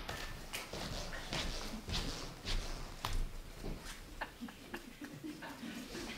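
Scattered small knocks, clicks and rustling at irregular moments in a quiet hall with a seated audience, with a low room rumble beneath.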